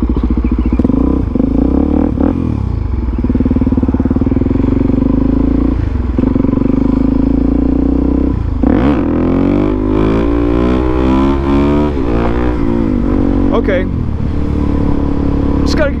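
Suzuki DR-Z400SM single-cylinder four-stroke engine pulling away and accelerating up through the gears, the revs dropping briefly at each shift, then running at road speed.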